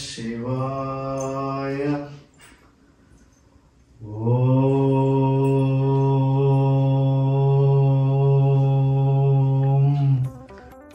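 A man chanting a prayer, holding a single low steady note. He sings a short held tone of about two seconds, pauses, then holds one long tone from about four seconds in to the end.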